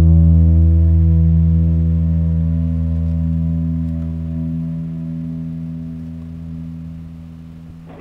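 Background music: a single guitar chord, with distortion, left ringing and fading slowly over several seconds, then a new note struck at the very end.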